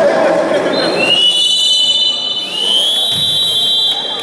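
Referee's whistle blown in two long blasts, each pitch rising slightly as it starts, the second held longer; crowd shouting fills the first second.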